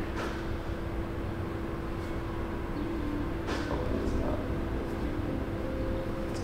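A steady mechanical hum with a low rumble under it, holding one even tone, and a faint soft click about three and a half seconds in.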